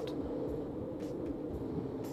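A steady low drone, a sustained hum with a few held pitches, with no speech over it.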